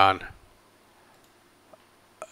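One or two faint computer mouse clicks, about a second in and again shortly after, against a quiet background.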